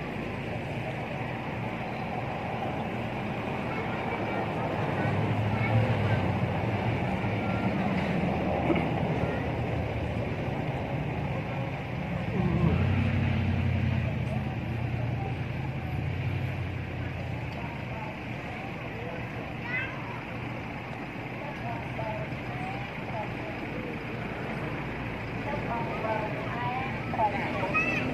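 Steady outdoor background with a low engine rumble that swells and fades twice, like vehicles passing by. Faint short high squeaks come near the end.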